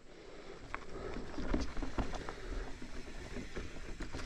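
A mountain bike rolling over a rocky dirt trail: tyre noise on loose ground with scattered knocks and rattles as the bike hits rocks, building up over the first second or so.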